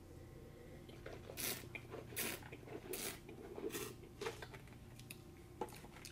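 A taster sipping red wine and slurping it, with about four short hissing slurps and quiet swishing between them as air is drawn through the wine in the mouth.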